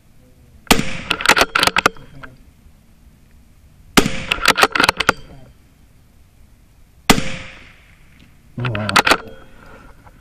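Three .22 LR rifle shots about three seconds apart, each followed by a quick run of sharp clicks.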